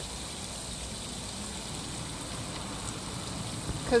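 Steady, soft wet scrubbing noise: a soapy sponge rubbing over the face of an acrylic painting on canvas, washing silicone residue off the cured paint.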